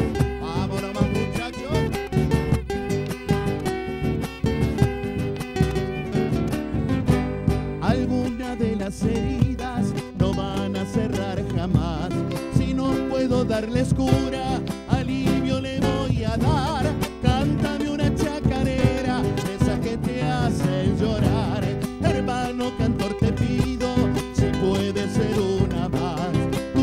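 Instrumental passage of an Argentine chacarera: strummed acoustic guitars over a steady beat on a bombo legüero drum.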